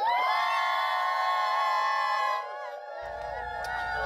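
A group of children and adults shouting a greeting together in unison, one drawn-out cheer held for about two and a half seconds before it breaks off.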